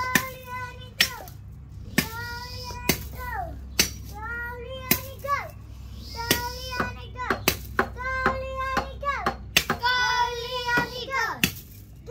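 A machete blade chopping into the thin trunk of a small tree, sharp strokes about once a second, a dozen in all. Between the chops a child's high voice calls out in a sing-song.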